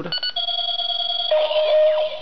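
Bandai DX Chalice Rouzer belt buckle playing its electronic power-up sound as it is switched into B mode. A few quick clicks, then a steady electronic tone, then a lower held tone with a warbling sweep above it.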